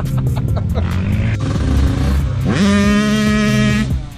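Yamaha sport quad engines (Raptor 700 and YFZ450R single-cylinders) running at low speed. About two and a half seconds in, one revs up and holds a high steady pitch, then drops off abruptly at the end.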